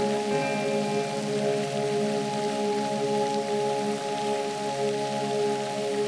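Ambient music of sustained, layered tones held steady like a singing bowl or synth pad, over an even hiss.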